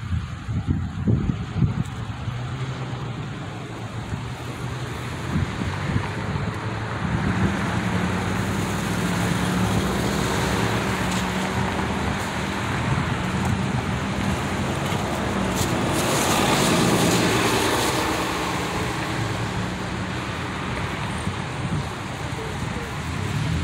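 Road traffic: cars driving past on a street, tyre and engine noise swelling and fading, loudest about three-quarters of the way through.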